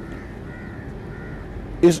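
A bird calling faintly in the background, a few short calls, while the talking pauses; a man's voice starts again near the end.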